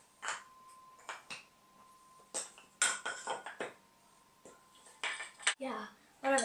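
Hollow halves of a painted matryoshka nesting doll being handled and fitted back together, giving a scattered series of small clicks and knocks, closest together near the end.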